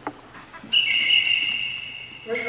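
Officials' whistles blown in one long steady blast of about a second and a half, starting just under a second in, two high pitches sounding together. A brief falling yelp comes right at the start.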